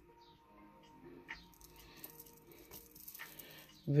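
Quiet room with faint steady background music and a few soft clicks as a strand of stone beads is handled.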